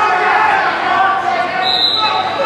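Indistinct voices of spectators and coaches echoing in a gymnasium around a wrestling mat, with a brief high-pitched squeak near the end.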